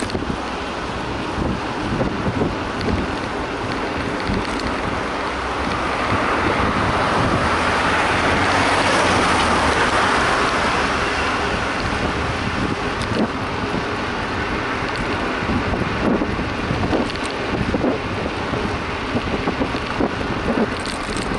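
Wind buffeting the microphone and a low road rumble from a moving bicycle, with a large vehicle overtaking close by: its noise swells to a peak about halfway through, then fades.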